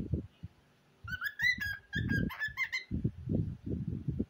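Cockatiel chattering in a run of short whistled chirps about a second in, lasting about two seconds, over low rumbling noise.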